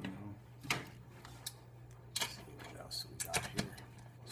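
Scattered sharp metallic clicks and clinks of hand tools and a socket being handled during an engine teardown, thickest near the end, with one brief high ring about three seconds in, over a low steady hum.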